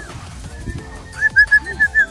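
A bird calling: a quick run of about six short, high whistled notes on one pitch in the second half.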